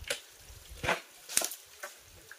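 Water from a rock seep dripping and splashing onto a leaf held beneath it: a few irregular sharp taps and rustles, about four in two seconds, over a faint trickle.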